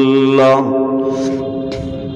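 A man chanting a devotional line in one long held, melodic note. The note steps up in pitch about half a second in and then breaks off, leaving a fainter steady tone.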